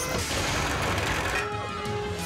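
Cartoon sound effect of a toy-like fire truck's ladder extending: a loud rushing noise lasting about a second and a half, over background music.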